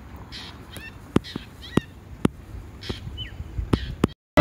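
Outdoor birds calling in short chirps with falling notes, several times, over a light background hiss. A few sharp taps are heard between the calls.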